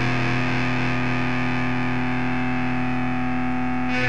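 Distorted electric guitar chord held and ringing steadily: the closing chord of the song.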